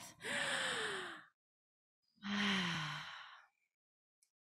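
A deep breath drawn in audibly, then, after about a second's pause, let out in a long sighing breath, taken on purpose as a calming exercise.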